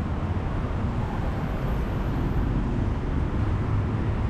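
Steady road traffic noise: a continuous low rumble of car and motorbike engines and tyres, with no single vehicle standing out.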